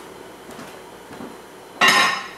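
Kitchenware struck together near the end: one sudden loud clank that rings briefly, over low steady noise.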